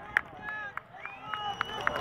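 Distant shouts and calls from players and spectators across an outdoor soccer field, one voice holding a long call, with a few short sharp taps among them.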